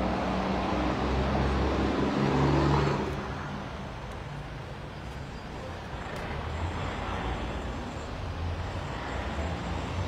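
A motor vehicle driving past on the street, its engine swelling to its loudest in the first three seconds and then falling away, leaving a lower wash of passing traffic.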